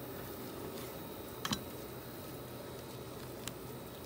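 Knife and gloved hands working a quail carcass on a wooden chopping board: a short double click about a second and a half in and another click near the end, over a quiet outdoor background hiss.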